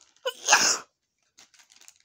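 A person sneezes once, about half a second in: a short voiced catch of breath, then a loud hissing burst. A few faint rustles of plastic packets follow near the end.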